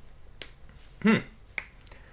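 A man's brief murmured "hmm" about a second in, with a sharp click just before it and a smaller click near the end.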